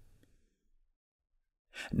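Near silence between two sentences of narration: the voice trails off at the start, and a short intake of breath comes near the end just before speech resumes.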